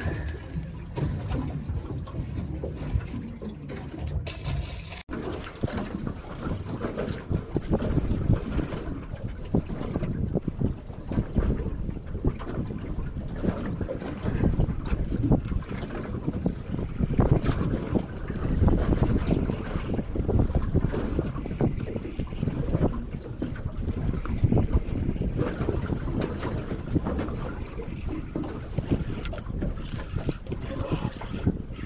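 Wind buffeting the microphone in gusts, with water lapping and slapping against the hull of a small boat drifting on choppy water.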